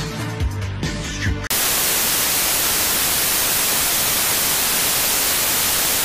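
Music with a regular beat cuts off abruptly about a second and a half in, replaced by loud, steady hiss of analog television static from an untuned TV.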